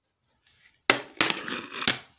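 A girl coughing three times in quick, harsh bursts, starting about a second in.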